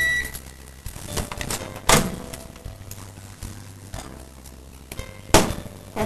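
A microwave oven's beep ends just after the start. Then come two sharp knocks, about two seconds in and near the end, as the microwave door is opened and a glass bowl of cooked carrot is lifted out.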